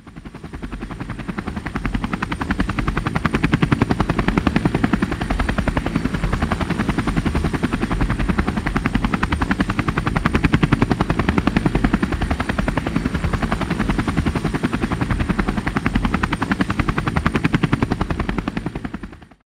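A steady, rapid mechanical pulsing with many beats a second, like a rotor or engine. It fades in over the first couple of seconds and begins to fade out at the end.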